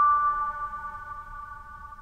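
Slow lullaby music: a single bell-like mallet note, glockenspiel-like, struck just before, rings on and slowly fades over fainter held tones.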